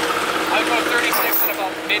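A John Deere 85G excavator's diesel engine running steadily with a low hum, under a person's voice. The sound breaks off abruptly just after a second in.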